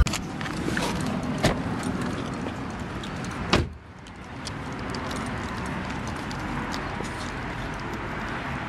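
Car door being opened and slammed shut as the driver gets out: a click about a second and a half in, then the slam about three and a half seconds in. Steady outdoor background noise follows.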